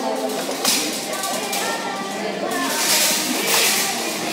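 Background music playing in a large shop, mixed with indistinct voices of people talking in the hall.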